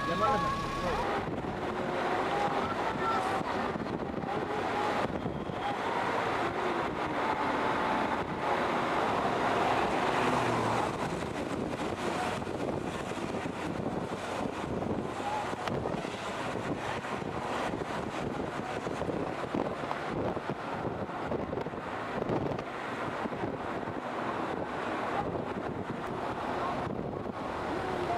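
Steady rush of wind and road noise from a moving vehicle, heard from inside it with the camera at a side window.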